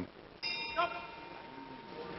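Boxing ring bell struck once about half a second in, ringing on and slowly fading over about a second and a half: the bell marking the end of the round.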